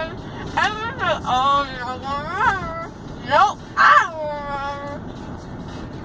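A teenage girl making wordless whining, wavering vocal sounds, several long cries sliding up and down in pitch, after having her wisdom teeth out. Car road noise runs underneath.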